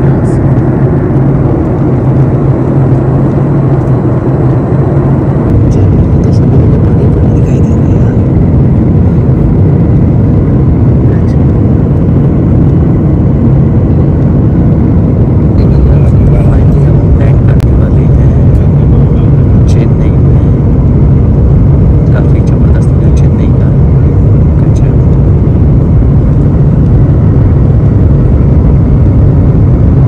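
Jet airliner's turbofan engine heard inside the cabin next to the wing during descent: a loud, steady rumble that grows a little louder about six seconds in and again around sixteen seconds.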